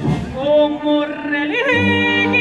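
A woman singing a copla with a wind band: a wavering sung phrase over a held accompanying note. Near the end the full band comes back in with brass and a strong low bass.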